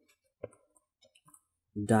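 A stylus clicking against a writing tablet as a word is handwritten: one sharp click about half a second in, then a few faint ticks.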